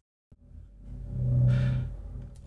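A brief dead-silent gap, then a click and a man's low closed-mouth hum that swells and fades over about a second.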